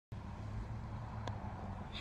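Steady low hum of a car's cabin with the engine running, with one faint click just past halfway.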